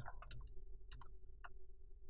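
A handful of faint computer keyboard keystrokes, scattered clicks in the first second and a half, over a low steady hum.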